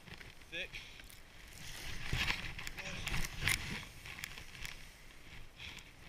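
Skis pushing through deep powder snow: a rushing swish that swells about two seconds in, with a few sharp clicks.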